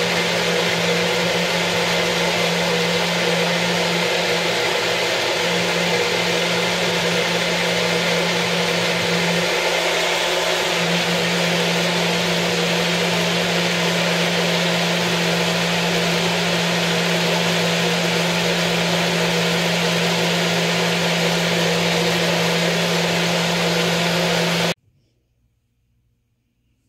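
Magic Bullet personal blender motor running steadily, puréeing a mix of banana, avocado, aloe vera and oils into a smooth conditioner, then cutting off abruptly near the end.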